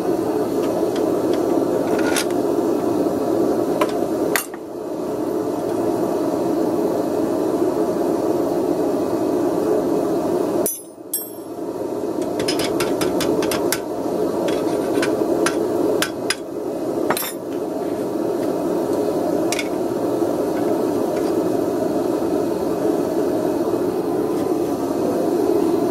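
Hammer striking the steel coil of a forged snail striker clamped in a bench vise: a few scattered blows, then a quick run of several strikes near the middle. Under it runs a loud steady rushing noise.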